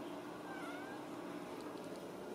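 A Ragdoll cat giving one faint, short, high meow about half a second in.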